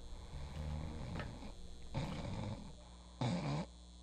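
A person asleep in bed snoring: low, rasping breaths through the nose and throat, then a short, louder huff of breath a little over three seconds in.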